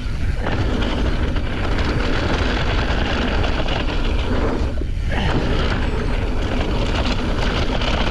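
Mountain bike ridden fast down a dirt trail: wind on the microphone and knobby tyres on dirt, with steady rattling over bumps and a brief lull about five seconds in.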